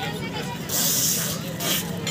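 A sharp burst of hissing, a little over half a second long, followed by a shorter hiss, over background chatter of voices.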